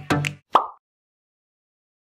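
The last notes of a channel intro jingle cut off, followed by one short blip sound effect about half a second in, then complete silence for over a second.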